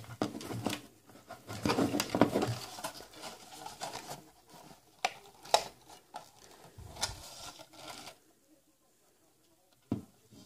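Handling noises and a few sharp plastic clicks as a wiring-harness connector is worked into the back of a car radio's metal chassis.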